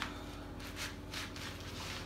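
Rubber clog sole scuffing back and forth over a ribbed rug, grinding crumbs, crisps and sauce into the pile: a run of short scrapes.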